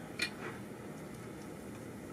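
Steady low room hum, with one light click a fraction of a second in.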